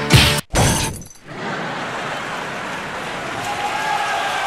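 A sudden loud crash with a shattering, breaking sound, over within about a second, followed by a steady hiss.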